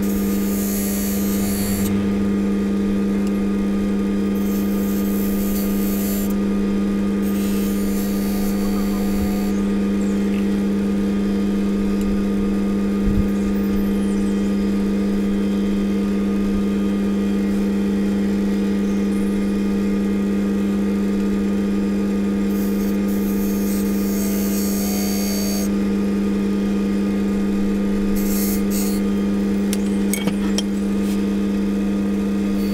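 Wood lathe motor running with a steady hum. A chisel held against the spinning bowl scrapes back hardened white Milliput epoxy putty in several short spells of hissing.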